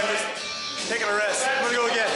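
A man talking over background music.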